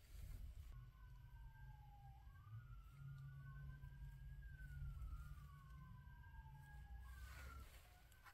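Faint siren wailing, two tones sliding slowly up and down and crossing each other, starting about a second in and fading near the end, over a steady low rumble.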